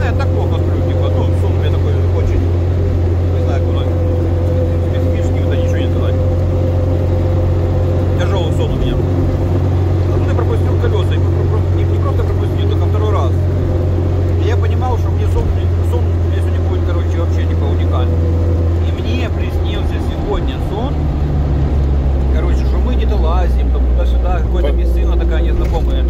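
Engine and drivetrain drone heard from inside the cabin of a UAZ off-roader driving on the road, a loud steady low hum that drops lower about twenty seconds in.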